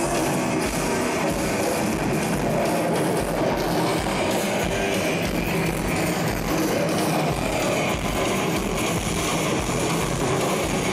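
Live rock band playing at a steady level, with drums and electric guitar, picked up by a Hi-8 camcorder's microphone in the crowd.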